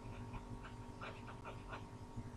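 Faint, short scratching strokes of a pen or stylus writing, about six in two seconds, over a steady background hum.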